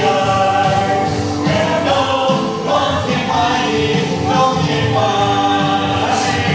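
Congregation of young voices singing a gospel praise song together, with hands clapping along.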